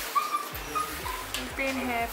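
A dog whimpering in several short, high-pitched whines, with a voice starting near the end.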